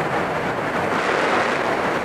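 Steady rush of wind noise on a motorcycle-mounted action camera's built-in microphone while riding at road speed, with no distinct engine note standing out.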